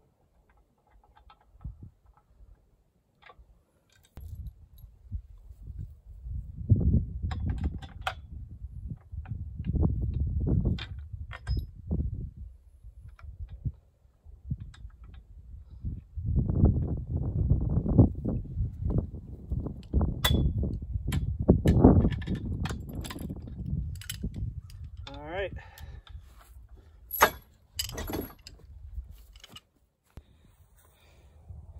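Steel wrench and bolts clinking and ratcheting against the steel frame of a trailer wheel kit as its three-quarter-inch bolts are worked, in scattered clicks that bunch up in the last third. Low rumbling comes and goes in gusts through much of it.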